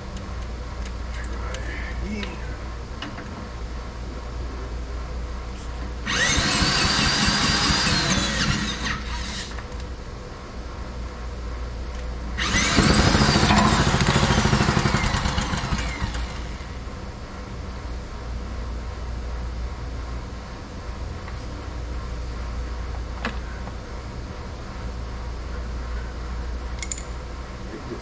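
Small single-cylinder engine spun over twice by a corded electric drill, each try lasting three to four seconds with the drill's whine rising and then falling away; the engine does not catch. Its carburetor's main jet port has just been cleared of a blockage.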